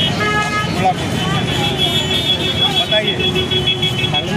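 A vehicle horn sounds one long, steady held note over crowd chatter and street traffic.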